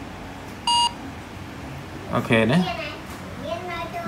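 A single short electronic beep from a smartphone, under a second in, signalling that its camera has read a QR code. A person talks in the second half.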